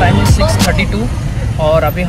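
Steady low rumble of a moving car heard from inside the cabin, with a man talking in short bursts over it; background music cuts out right at the start.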